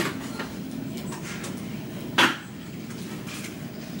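A kitchen dishwasher being opened: a few light knocks and one sharp clunk about two seconds in, over a low steady hum.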